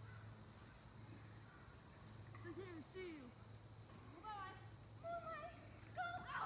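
Faint, distant children's voices calling out a few short times, mostly in the second half, over a steady high-pitched hum.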